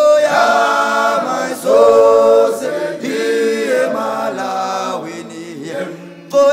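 Background music: an unaccompanied vocal group singing chant-like phrases in harmony, with notes held for about a second and gliding between pitches.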